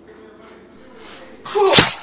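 A person's single sudden, loud vocal burst about one and a half seconds in, lasting about half a second.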